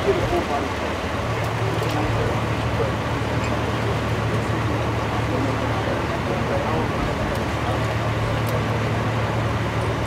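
Idling vehicle engine: a steady low hum that settles in about a second in, under indistinct voices and street noise.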